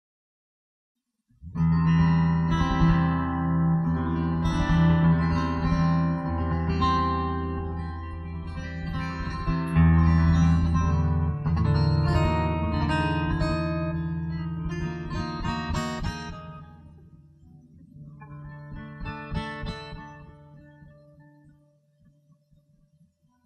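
Slow, peaceful plucked guitar music over low held notes. It starts about a second and a half in after silence, fades down in the last few seconds after a softer closing phrase, and dies away at the end.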